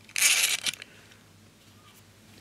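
Brief scraping rattle of long steel bolts being slid through the holes of a stepper motor body and its aluminium end cap, lasting about half a second shortly after the start, followed by faint handling.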